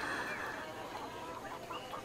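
Faint chickens clucking.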